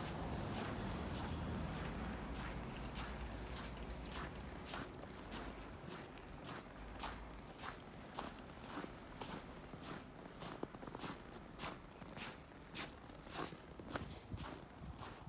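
Footsteps in deep fresh snow, about two steps a second, evenly paced. A low rumble under them fades away over the first several seconds.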